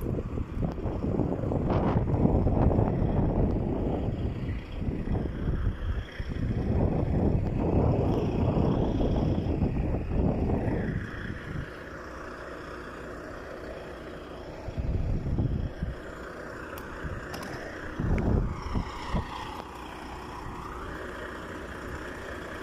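Wind buffeting a phone microphone in strong, uneven gusts for about the first ten seconds, then dropping to a quieter steady background with a faint hum. Two more short gusts come through later.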